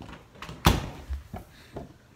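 A door being handled: one sharp bang about two-thirds of a second in, with a few lighter knocks and clicks around it.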